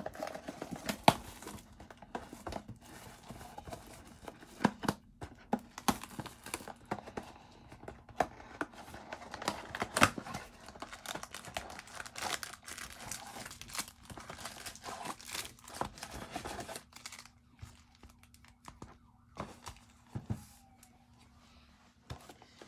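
Plastic shrink wrap being torn off a trading-card box and crinkled, then foil card packs rustling as they are pulled out and stacked. The crackling and tearing is busiest for the first three-quarters and thins out near the end.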